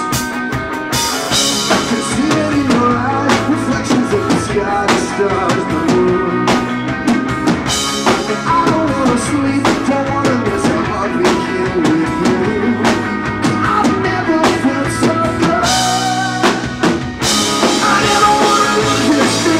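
Live rock band playing loud, driving music: drum kit with bass drum and cymbals, electric guitars, bass and keyboard. The drums hit hard throughout, and the cymbals crash in louder about a second before the end.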